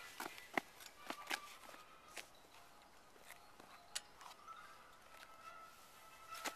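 Faint footsteps and scattered small clicks and taps on asphalt, a few louder taps standing out.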